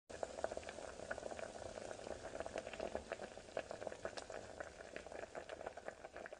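Soup broth boiling in an aluminium pot of noodles and fish balls, with a steady stream of many small bubbles popping.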